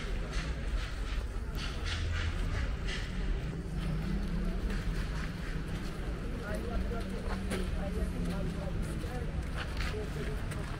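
Outdoor street ambience: people talking in the background, with footsteps crunching on a gravel path at about two steps a second.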